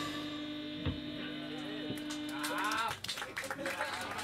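A single sustained note rings on from the stage after a band's song stops, cutting off just under three seconds in, while audience members whoop and clap.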